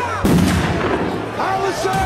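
A sudden loud boom about a quarter second in, leaving a low rumble: a film-trailer impact and explosion sound effect.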